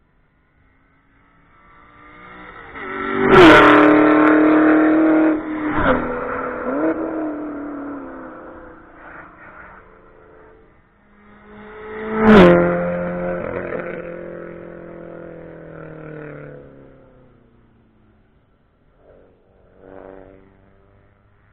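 Cars passing close by at speed on a race track, one after another, each engine note rising as it approaches and dropping sharply in pitch as it goes past. There are two loud passes, about three and twelve seconds in, and a quieter one shortly after the first. Each fades away down the track.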